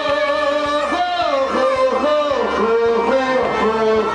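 Live Kashmiri Sufi folk music: a singer holds long, wavering notes over a plucked rabab, with steady, soft drum strokes underneath.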